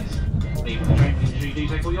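Background music with a steady beat over a train's onboard PA announcement, with the low, steady running rumble of a Class 745 electric train heard from inside the carriage.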